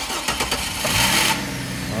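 2008 Chevrolet Trailblazer engine being cranked by its starter, energised through the starter-relay socket because the ECM's relay control signal is weak. It catches within about half a second, rises to a fast idle about a second in, and settles into a steady run.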